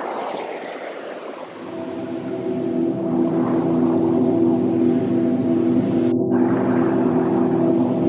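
Rushing water of a shallow rocky creek. Less than two seconds in, a low ambient music drone of several held notes fades in and grows louder, pulsing slightly, with the water still audible above it.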